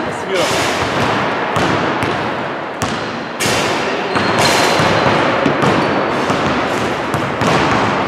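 Several basketballs bouncing on a wooden court floor in quick, irregular knocks, echoing around a large sports hall, with players' voices in the background.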